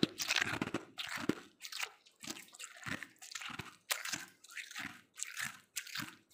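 Ice being chewed in the mouth: crisp crunches, about two a second, a little louder at first.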